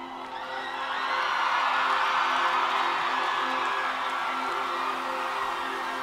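A live band holds a steady sustained chord to open a song while the audience cheers and whoops, the crowd noise swelling about a second in.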